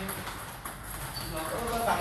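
Table tennis ball clicking off paddles and the table in a rally, a few sharp light knocks.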